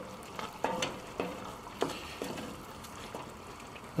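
Sherry sizzling and steaming as it cooks off on hot onions in a cast iron Dutch oven, with a wooden spoon stirring and knocking against the pot several times in the first half.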